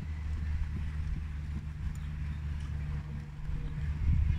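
Faint hoofbeats of a dressage horse in collected trot on a sand arena, under a steady low rumble.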